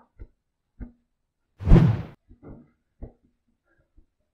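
A cotton towel pressed and rubbed on a freshly rinsed face. There are a few soft knocks and one louder rub lasting about half a second near the middle.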